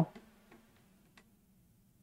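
Near quiet room tone with two faint, short clicks, about half a second and just over a second in, typical of a computer mouse or keyboard in use.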